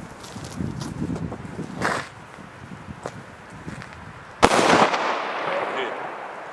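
A Di Blasio Elio Cobra P1 firecracker going off with a single loud bang about four and a half seconds in, followed by a reverberating tail.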